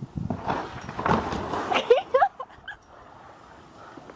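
Scuffling noise with knocks, then a few short rising yelps about two seconds in.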